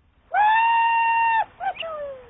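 A man's high, held call, like a yodel: one long high note for about a second, then two short yelps and a cry that slides down in pitch near the end.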